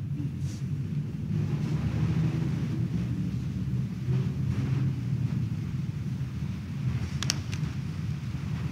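Steady low rumble of a large church's room sound while the congregation exchanges the sign of peace, with faint indistinct murmur and a brief click near the end.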